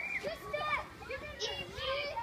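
Young children's voices, several at once, chattering and calling out while playing.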